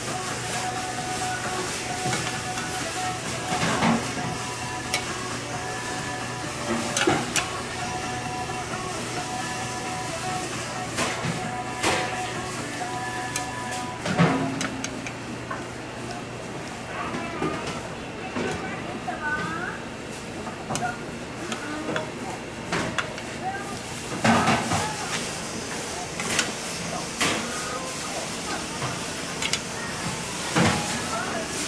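Cleaver blade knocking on a wooden chopping board as a cucumber is sliced, a handful of separate knocks several seconds apart. Behind them a steady low hum and background voices.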